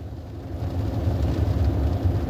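Low vehicle rumble heard from inside a car cabin, growing louder through the middle of the pause, with a faint steady hum under it.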